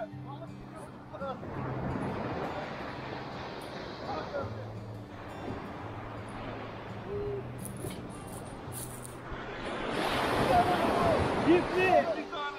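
Surf washing onto a pebble beach, swelling loudest near the end, under soft background music with held low notes.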